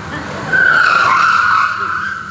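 Car tyres squealing in one long squeal of about a second and a half, starting about half a second in and dipping slightly in pitch before holding steady, as an SUV is swerved by remotely hijacked steering. Heard as a video's soundtrack played over a hall's loudspeakers.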